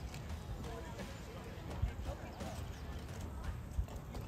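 Indistinct distant voices of people talking across an open field, with an irregular low rumble underneath.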